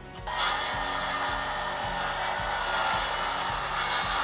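Milwaukee M18 CCS55 cordless circular saw crosscutting a row of wooden boards in one pass. The blade bites in sharply about a quarter second in and cuts steadily and smoothly.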